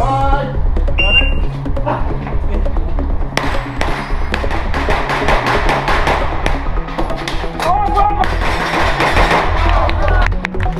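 Background music with a steady beat, and over it, from about three seconds in, a fast irregular string of sharp rifle shots from two shooters firing at once.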